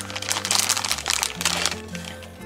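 Thin clear plastic bag crinkling irregularly as a die-cast toy car is slid out of it by hand, over steady background music.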